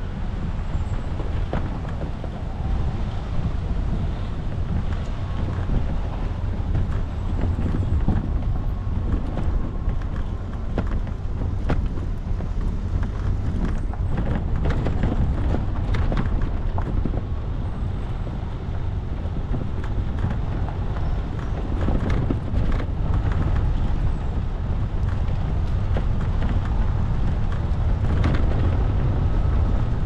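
Off-road vehicle driving along a gravel forest track: a steady low rumble of engine and tyres on dirt, with wind buffeting the microphone and scattered clicks and knocks from stones and rattling parts.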